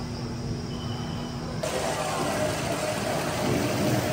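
Steady indoor room ambience: a low hum with faint background voices, switching suddenly about one and a half seconds in to a louder, hissier ambience.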